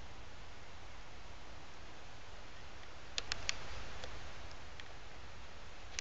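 Faint steady background hiss and low rumble, with three sharp clicks in quick succession a little past halfway, then a few fainter ticks and one more click near the end.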